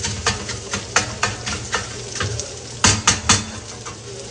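Metal tongs clicking and tapping against a frying pan as sausages are turned, over a low sizzle of frying. There is a quick run of three sharp clicks about three seconds in.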